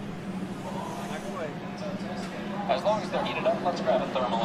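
Test Track ride vehicle running with a steady hum, under people's voices that grow louder near the end.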